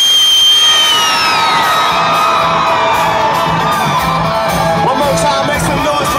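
A country-rock band playing live at a loud concert, with the crowd cheering and whooping. Near the start a piercing high whistle holds for about a second, then slides down in pitch.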